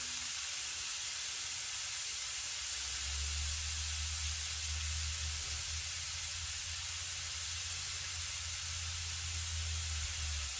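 Meat frying on an electric griddle, a steady sizzling hiss, with a low hum coming in about three seconds in.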